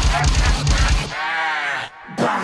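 Drumstep music with a heavy bass beat and gliding voice-like sounds; about a second in, the beat drops out, leaving one drawn-out voice-like sound that rises and falls in pitch.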